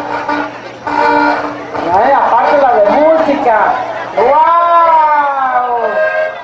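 Music with a voice singing: long, drawn-out sung notes that swell and slowly fall in pitch, the longest held for about two seconds late on, with short breaks between phrases.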